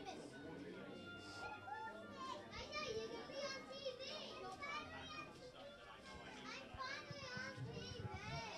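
Several young children chattering and calling out at once, their high-pitched voices overlapping, busiest from a few seconds in.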